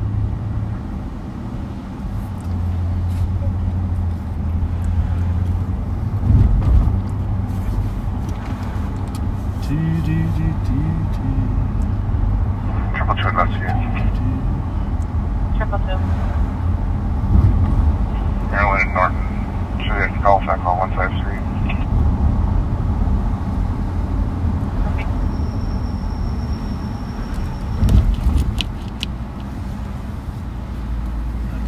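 Steady low engine and road rumble inside the cabin of a moving car. Short snatches of thin, narrow-sounding voice come through in the middle, and a faint high steady tone sounds for a couple of seconds near the end.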